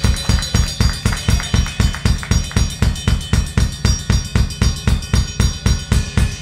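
Live rock band playing at full volume: drum kit, bass and electric guitar driving a steady, fast beat of about four hits a second.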